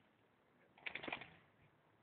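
Golden retriever giving one brief low vocalization about a second in, a short run of quick pulses, the sort of sound the dog makes when it seems to be trying to talk.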